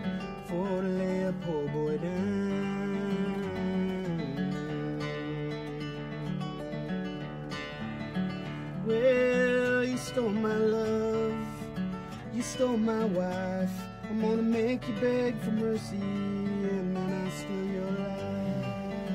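Nylon-string acoustic guitar played solo in a car's cabin, an instrumental break of picked chords and melody notes in a blues song.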